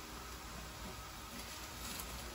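Quiet room tone: a faint steady hiss with a low hum underneath, and no distinct event.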